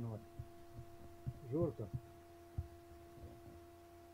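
A man's short laugh about one and a half seconds in, over a steady hum, with a few faint low knocks.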